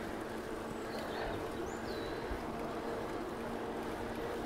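Steady rolling noise of a touring bicycle on smooth asphalt, tyre and wind hiss with a faint steady hum underneath, and a faint short bird chirp about midway.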